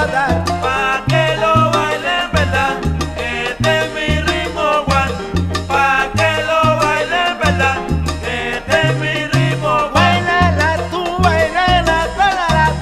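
Salsa band recording from 1971 playing an instrumental stretch: a repeating bass line under steady percussion strokes, with pitched melody instruments above.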